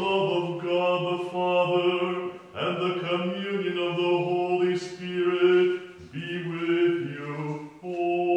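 Orthodox liturgical chant: voices sing sustained phrases, breaking briefly about two and a half seconds in and again about six seconds in.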